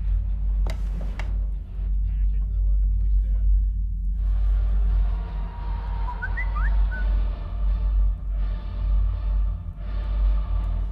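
Horror film score: a low, steady rumbling drone, with a couple of sharp clicks about a second in and a hissing noise that comes in from about four seconds in.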